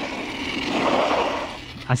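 Arrma Notorious RC truck driving across pavement: a rushing noise from its electric drivetrain and tyres that swells about halfway through, then fades.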